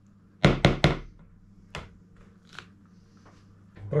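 A metal spoon knocked three times in quick succession against a plastic mixing bowl, then one lighter tap a second later.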